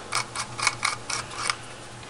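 A run of light clicks and scrapes, about four or five a second for a second and a half, as the screw base of an LED bulb is twisted out of a plastic lamp socket.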